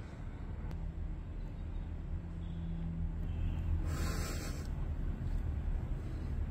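A black bear wading and settling in a swimming pool: water moving around it under a steady low rumble, with one short hissing burst, under a second long, about four seconds in.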